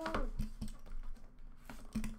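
Trading cards and a sealed foil card pack being handled by hand: a few light, sharp clicks and taps of card stock, the loudest just before the end.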